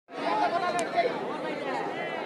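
Crowd of football spectators chattering, many voices talking over one another.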